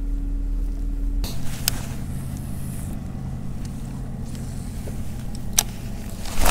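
Electric trolling motor of a bass boat humming steadily. Its pitch changes about a second in, and there are two brief sharp clicks.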